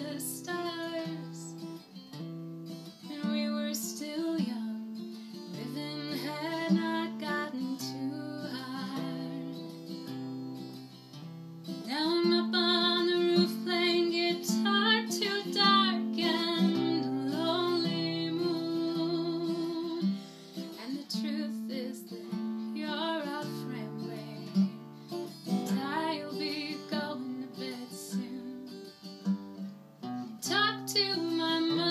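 Acoustic guitar played with a woman singing over it; the music grows louder about twelve seconds in.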